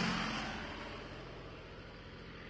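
Tail of a production-logo sound effect: a whoosh dying away over a steady low hum, both fading out gradually.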